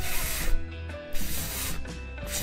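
A voice giving the sound of the letter F, a hissing "fff" held about half a second, twice, over background music.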